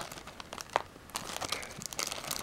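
Plastic-sleeved trading card booster packs crinkling and clicking as fingers flip through them in a cardboard box, with one sharper crackle a little under a second in.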